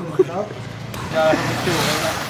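A motor vehicle passing on the street, its noise swelling toward the end and then fading, with scattered voices over it.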